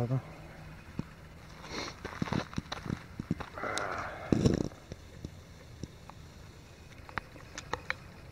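Handling of a fleece and backpack: rustling and small knocks. A short vocal sound and a louder thump come about four seconds in. Then a few scattered steps on the trail follow.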